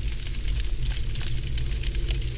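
Crackle and hiss of a vintage film sound effect over a muffled low rumble, steady and dense with quick ticks.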